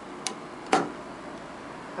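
Old relay switches of an antique Dominion traction elevator's controller clicking as the car starts: two sharp clicks about half a second apart, the second louder and ringing briefly.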